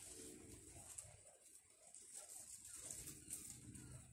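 Near-silent outdoor quiet with a faint, low-pitched bird call heard near the start and again near the end.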